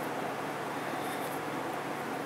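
Steady background hiss of room noise with no distinct event in it.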